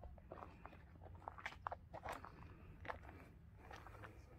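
Footsteps crunching on stony, gravelly ground: a string of faint, irregular crunches, over a low steady rumble.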